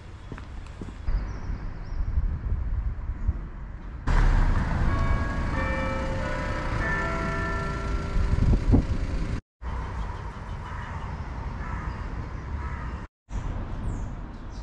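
Outdoor street ambience with a low rumble on the microphone. About four seconds in it gets suddenly louder, and a few sustained tones at different pitches sound one after another. The sound cuts out briefly twice near the end.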